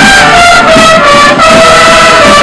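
Marching band's trumpets playing a melody in long held notes, very loud and close.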